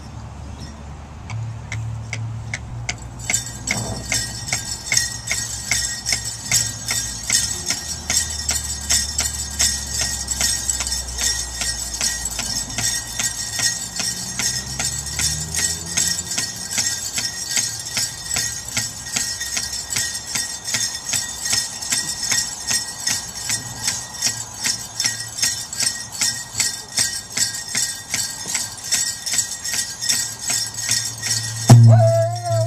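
Bells on dancers' regalia jingling in a steady, even beat as the dancers dance, starting about three seconds in.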